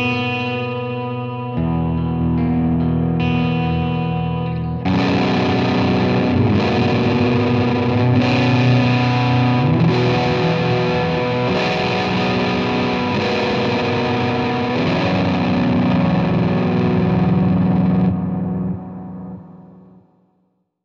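Electric guitar through a Science Amplification Mother preamp pedal, playing sustained, ringing chords. About five seconds in the pedal is switched to its other channel and the tone turns thicker and distorted. The playing rings out and fades away near the end.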